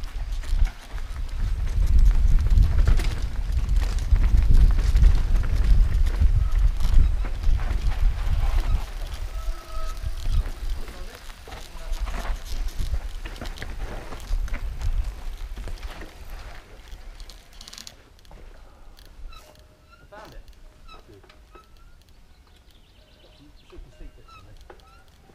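Low, loud rumbling noise of the kind wind makes on a moving camera's microphone, easing off about two-thirds of the way through to a much quieter stretch with scattered light clicks and ticks.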